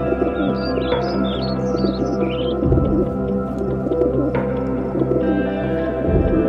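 Ambient background music of sustained chords, with short bird chirps mixed in during the first half.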